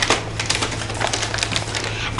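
Brown paper bag crinkling and rustling in rapid, irregular crackles as its open end is gathered and twisted by hand into a stem.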